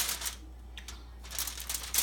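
A sharp click, then a quieter stretch with a few faint clicks, and a rush of light crackling clicks near the end, over a steady low hum.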